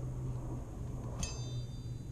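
A single light metallic clink with a short high ring about a second in, as a finger strikes a 350Z's burnt-finish exhaust tip. A steady low hum runs underneath.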